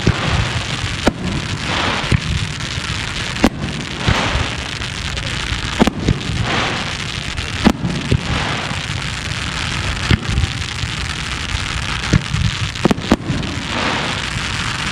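Aerial firework shells from a daytime display: mortar launches and shell bursts banging at irregular intervals, about one to two seconds apart, with a few in quick succession near the end, over a continuous hiss.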